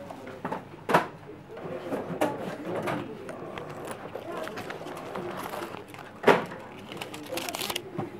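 Shop checkout: indistinct voices in the background, two sharp knocks about a second in and a little after six seconds in, and a short quick rattle of clicks near the end.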